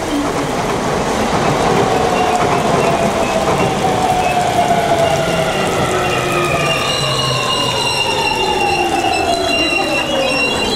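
Electric train running by on the tracks, its motor whine slowly falling in pitch throughout; several high steady tones join about seven seconds in.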